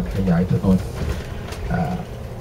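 A man speaking Thai in continuous narration, over a steady low rumble.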